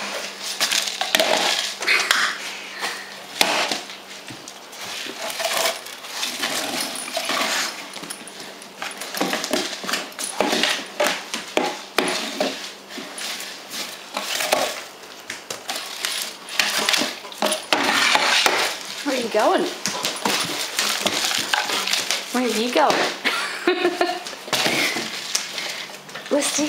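A German Shepherd playing with a tube toy on the floor: repeated clattering and knocking as the toy is mouthed, pawed and knocked about, irregular throughout.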